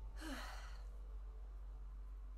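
A woman sighs once near the start, a short breathy exhale whose voice falls in pitch. A steady low hum runs underneath.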